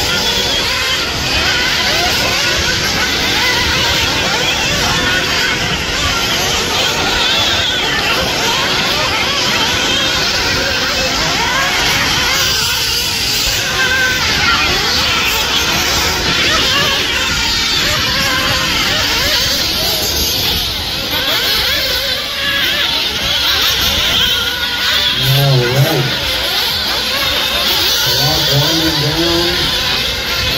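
Radio-controlled off-road buggies racing on a dirt track, their motors whining and revving up and down as they accelerate, jump and brake.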